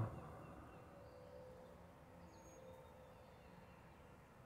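Near silence: faint background ambience with a few very faint, brief tones.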